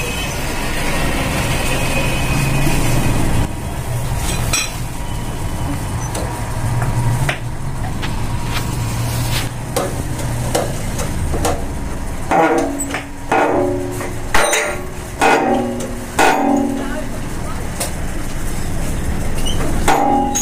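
A steady low hum with a few light metallic knocks, then short bursts of a voice in the second half.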